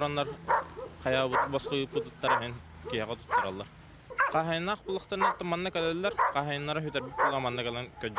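A man talking, with dogs barking in the background at a dog shelter's kennels.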